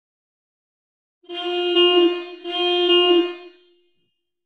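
A car horn sound effect honking twice, each honk about a second long at a steady pitch with a short gap between.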